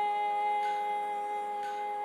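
Carnatic female voice holding one long, very steady note, the closing note of a Hamsadhwani krithi sung at shruti G, over a background drone with a soft pluck about once a second.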